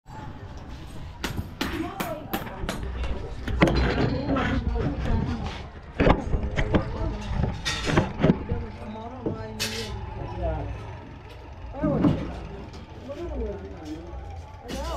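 People talking at close range, in words the recogniser did not catch, over a steady low rumble of road traffic, with a few sharp knocks.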